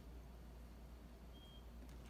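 Near silence: room tone with a steady low hum and a brief faint high tone about one and a half seconds in.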